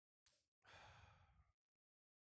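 Near silence, broken about half a second in by one faint breath, a short sigh-like exhale that fades away.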